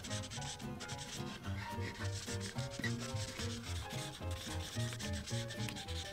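Prismacolor paint marker tip rubbing and scratching across paper in quick back-and-forth strokes, filling in a colour area. Quiet background music runs underneath.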